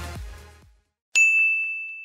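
The last of an electronic dance track dies away in the first half-second. After a brief silence, a single high, bright ding sound effect rings out a little past the middle and slowly decays.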